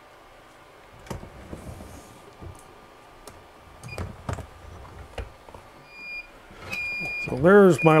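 Tusy swing-away heat press being handled: a series of light knocks and clicks as the top platen is swung over the work, then two high electronic beeps from its digital control panel, a short one and a longer one.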